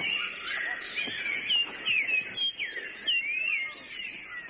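Rainforest birds calling: a busy, overlapping run of short whistled chirps and sliding notes, some rising and some falling, over a faint steady forest hiss.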